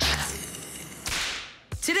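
A sudden, sharp sneeze burst, then a whoosh about a second in that fades away.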